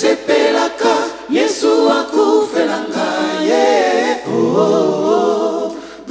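Live gospel singing: a male lead voice with other voices in harmony, carried mostly by the voices.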